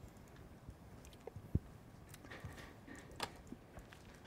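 Faint, scattered clicks of a computer mouse and keyboard, with one louder soft thump about one and a half seconds in.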